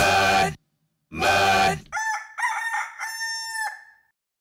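A rock song stops abruptly, a short final music hit follows, then a rooster crows once: three notes, the last held longest.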